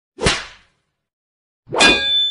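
Two whip-crack whoosh sound effects, one just after the start and one near the end, with dead silence between; the second rings briefly with a chime-like tone as it fades.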